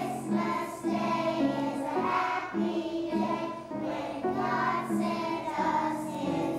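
A group of young children singing together, holding notes that step up and down in a steady melody.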